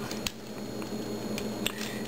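Plastic parts of a Transformers Deluxe Camaro Concept Bumblebee figure being handled and slid apart: faint rubbing with a few small clicks, one shortly after the start and two near the end.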